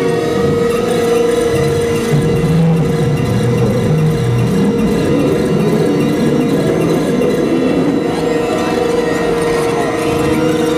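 Live experimental electronic music: a steady, loud drone on one held mid-pitched tone, with lower tones shifting in and out beneath it.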